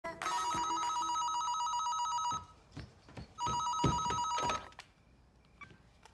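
A cordless home phone ringing twice, each ring a rapid electronic warbling trill about two seconds long, with a few soft knocks between the rings.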